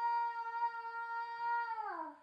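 A toddler holding one long, high sung 'aaah' at a steady pitch, which slides down and stops at the end.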